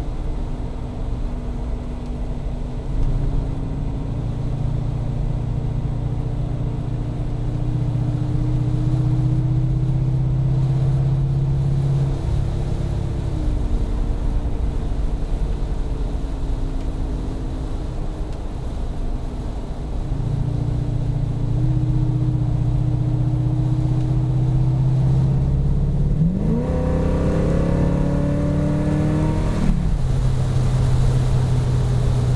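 Chrysler 440 cubic-inch (7.2 L) V8 of a 1974 Jensen Interceptor heard from inside the cabin, running with a steady throb under light load as the engine note slowly climbs, dips briefly about midway and climbs again. Near the end the revs sweep up quickly, then drop back.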